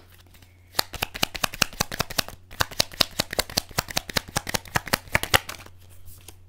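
A Lenormand card deck being shuffled by hand: a quick, dense run of card clicks and flicks that starts about a second in and stops shortly before the end.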